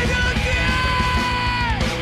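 Thrash metal band playing live: the male lead singer holds a long high scream over fast pounding drums and distorted guitars. Near the end the scream drops in pitch and breaks off, and the drumming stops with it.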